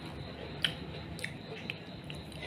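Close-up eating sounds: three short sharp clicks as food is picked up with wooden chopsticks and brought to the mouth. The loudest click comes about two-thirds of a second in.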